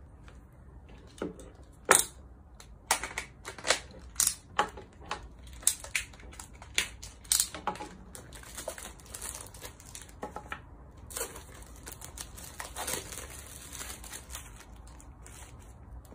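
Clear plastic packaging crinkling and tearing as it is cut with a utility knife and pulled off a box. Sharp crackles come in quick succession during the first half, and a longer, steadier rustle follows in the second half.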